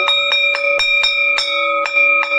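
School bell ringing, its clapper striking rapidly and evenly about five times a second: the bell that signals the start of the exam.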